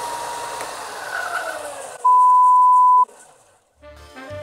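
Ryobi 4"x36" belt and disc sander running while EVA foam is sanded against its disc, with a tone that glides downward about a second in. The sound fades out before the end. About two seconds in, a loud steady one-second beep is laid over it.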